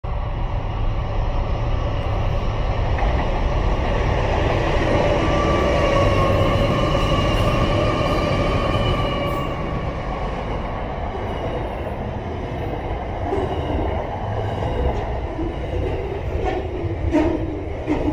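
Diesel-hauled container freight train passing close by: a loud rumble with several steady whining tones that drift slightly in pitch and fade out about halfway through as the head end goes past. Container wagons then roll by, with a few sharp wheel clacks near the end.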